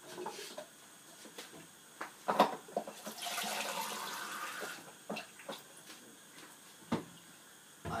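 Kitchen tap running for about a second and a half, filling a cup with water. Before it come a few sharp knocks and clatter of the cup being handled, and there are lighter clicks afterwards.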